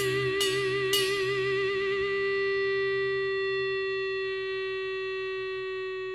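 Guitar holding a final sustained note with vibrato, with a couple of sharp picked accents in the first second. The vibrato then stops and the note rings out steadily, slowly fading: the closing note of the song.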